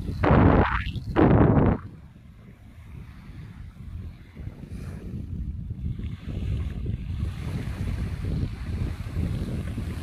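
Wind buffeting a phone microphone on a beach, with two loud gusts in the first two seconds, then a lower, uneven rumble of wind over the small waves washing onto the sand.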